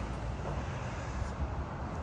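Steady low outdoor background rumble with no distinct event, apart from one faint tap about one and a half seconds in.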